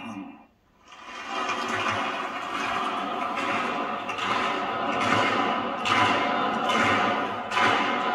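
Large audience applauding in a big hall. The clapping starts about a second in after a short silence and builds in waves, swelling again near the end.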